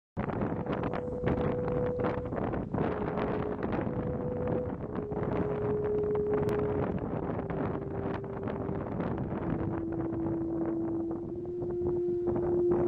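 Strong wind buffeting the microphone, gusting and crackling throughout. Over it, a thin held tone sounds a slow line of long notes, each lasting a second or two, stepping gradually lower.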